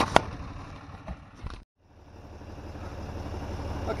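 Two sharp knocks of the camera being handled, then a brief cut to silence. After it, the steady low hum of a tractor engine idling, slowly growing louder.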